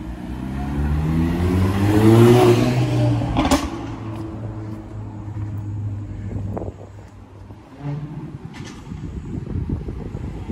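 A car passing on the street, its engine rising in pitch as it accelerates and loudest two to three seconds in, then settling to a steady low hum that fades out about seven seconds in. A single sharp click sounds a little after the engine peaks.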